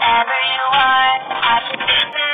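Music with a singing voice and a steady beat.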